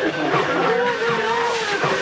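A woman's drawn-out, high-pitched wailing cries of grief, each cry rising and falling, with more than one voice overlapping.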